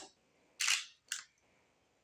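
Nikon D3500 DSLR shutter firing: a longer click about half a second in, then a shorter click about half a second after it.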